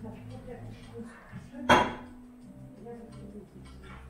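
A single sharp knock with a short ring a little under halfway through, loud over a steady low hum and faint background voices.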